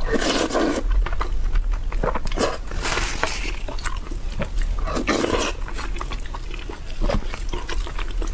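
Close-miked mukbang eating: loud wet slurps of saucy starch noodles at the start and around three and five seconds in, with chewing and small mouth and utensil clicks between them.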